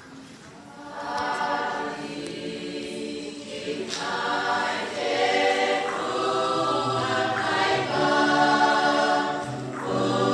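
Combined church choirs singing together, many voices at once, the singing starting about a second in.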